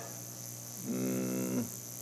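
A man's drawn-out hesitation sound, held at one steady pitch for under a second about halfway through, as he pauses mid-sentence to think. A steady high hiss runs underneath.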